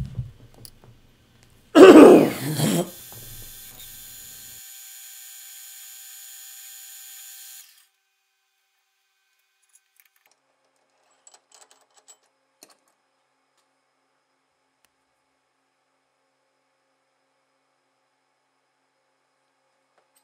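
Small metal lathe in use: a loud burst of about a second, then the machine running with a steady whine of several high tones for about five seconds before it cuts off suddenly. After that it is nearly silent, with a few faint clicks.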